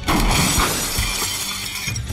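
A sudden loud crash of shattering glass, its bright crackling tail dying away over about two seconds, over background music.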